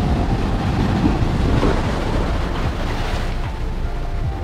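Ocean surf breaking and washing up the sand in a steady rush, with wind rumbling on the microphone.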